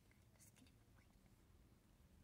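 Near silence, with a couple of very faint light ticks.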